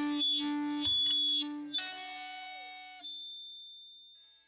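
The ending of the song: electric guitar played through effects, holding its last chord with a few final notes in the first two seconds, then ringing out and fading away steadily.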